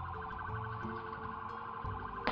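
A police siren sounding steadily with a fast pulsing tone, over sustained low background-music notes that change a few times.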